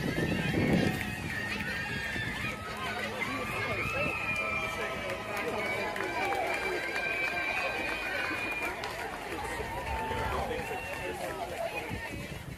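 Many overlapping voices of players and spectators calling and chattering across a baseball field, with no clear words; some calls are drawn out for a second or two, and one nearby voice is louder in the first second.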